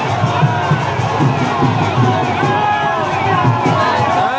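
A large crowd cheering and shouting, many voices overlapping, over music with a steady low beat.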